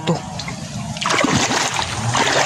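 Water splashing in a shallow creek as a person wades through and stirs it up. The splashing gets louder and busier about halfway through.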